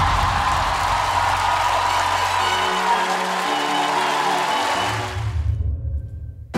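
Audience applause over sustained backing music, both fading out about five seconds in.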